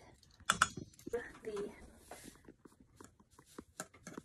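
Quiet kitchen handling sounds: a metal measuring spoon clicking and tapping against a stainless steel mixing bowl and a salt canister, with a sharp click about half a second in and small scattered ticks after. Soft, low murmured voices come in briefly.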